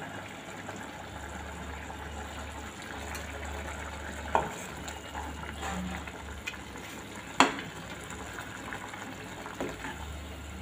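Ridge gourd kootu simmering and sizzling in a pan while a steel ladle stirs it, with a few sharp knocks of the ladle against the pan, the loudest about seven and a half seconds in.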